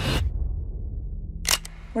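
A low rumble of the promo's score fades away. Then a sharp mechanical click comes about one and a half seconds in, with a second, smaller click just after it.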